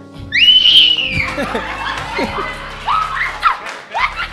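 A woman's high-pitched shriek that bursts out about a third of a second in and is held for about a second, followed by shorter wailing cries, over steady background music.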